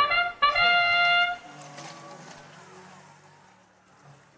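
Brass-like trumpet fanfare from the competition field's sound system marking the start of the match: a short note, then a longer held note that cuts off about a second and a half in. After it, only a faint low steady hum that fades away.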